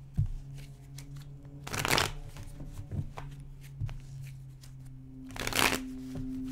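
A deck of tarot cards being shuffled by hand: two longer bursts of riffling card edges, about two seconds in and again near the end, with scattered single card snaps between them.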